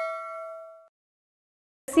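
A single bell ding sound effect for a subscribe-button notification bell: one struck, clear metallic tone that rings out and fades away within about a second.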